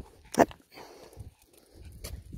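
A small dog barks once, a single short sharp bark about half a second in.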